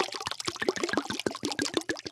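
Red wine being poured into a wine glass: a rapid, irregular patter of small splashes and gurgles as the stream hits the wine in the glass.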